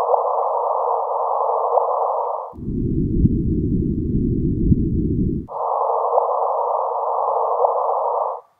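LIGO interferometer output from the binary black hole merger, converted to audio: a hissing 'woo' of detector noise ending each time in a brief chirp, the rising signature of the two black holes spiralling together and merging. It plays three times, at a frequency-shifted higher pitch, then lower, then higher again, with a sudden switch between passes.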